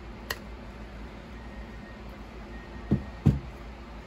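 Gloved hands working a resin print off a flexible steel build plate: one sharp click early on, then two dull thumps close together near the end.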